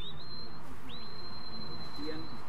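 Sheepdog handler's whistle commands: two whistles that sweep up quickly and hold a steady high note, the first brief, the second held for about a second and a half. They direct the dog while the sheep are being penned.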